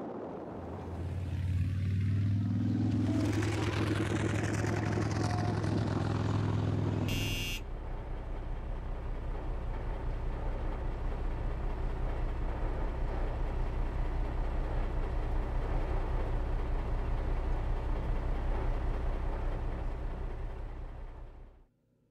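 Car engine and tyre noise on wet asphalt, heard from inside the car, with the engine note rising for a couple of seconds about a second in and then holding. About seven seconds in there is a brief high click, then a lower steady rumble with a fast flutter that cuts off suddenly near the end.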